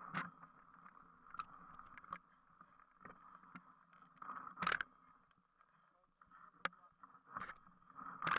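Mountain bike riding over a rough, muddy trail: a steady rolling noise with sharp knocks and rattles of the bike over bumps, the loudest knock about halfway through.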